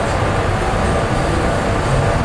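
Steady low rumble of city street traffic noise with a faint hum underneath.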